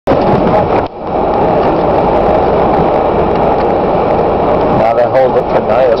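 Steady engine and tyre noise inside a Land Rover Discovery's cabin as it drives on a snowy road, dipping briefly about a second in. Voices and laughter come in near the end.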